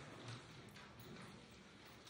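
Near silence: room tone with a few faint taps.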